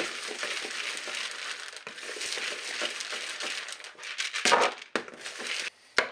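Wooden spoon stirring moistened dry cat kibble in a mixing bowl: a continuous crunching, rustling scrape of pellets against each other and the bowl, briefly louder a little after four seconds in, then stopping just before the end.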